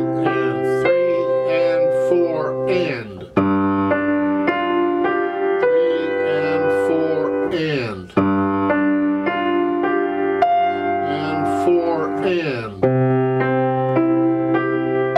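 Grand piano playing a slow, chordal study with the damper pedal down, so the notes ring on together. The ringing is cleared sharply twice, about three and eight seconds in, as the pedal is changed for each new chord.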